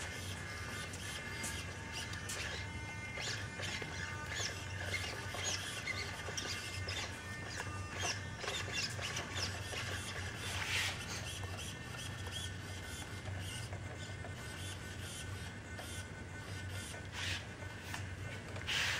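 Servo motors of a radio-controlled animatronic fish puppet whining and chirping in short high-pitched bursts as it moves, over a steady low hum.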